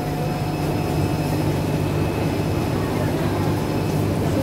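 Live-fish tanks with aeration running: a steady low hum from the pumps and the bubbling, churning water.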